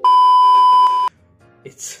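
Loud steady electronic test-tone beep, the kind played with TV colour bars. It is one high pitch held for about a second and cuts off suddenly.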